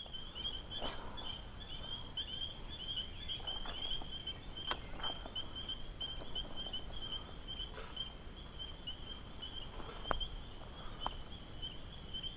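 Insects trilling steadily in a high-pitched, continuously pulsing chorus, with a few faint clicks and taps scattered through it.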